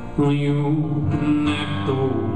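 Solo acoustic guitar and a man singing a slow song, played live; a new sung note and chord come in sharply about a fifth of a second in.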